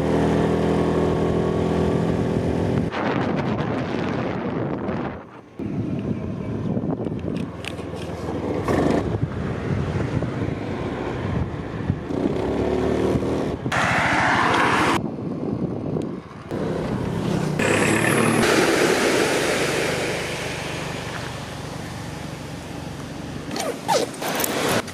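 Small motor scooter engine running while riding, with wind and road noise. The sound changes abruptly several times along the way, as at cuts between shots.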